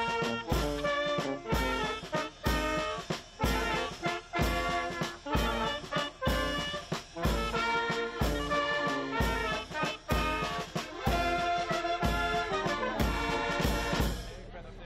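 A small brass street band of trumpets with accordion playing a lively tune over a steady beat.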